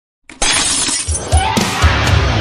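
A glass-shattering sound effect that starts suddenly about a third of a second in, with rock intro music coming in under it.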